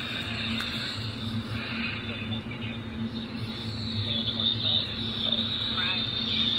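Ebright pocket AM/FM radio tuned to 750 on the AM band, its small speaker playing a weak station: faint voice and music buried in steady static hiss with a low hum. Reception is poor, barely coming in.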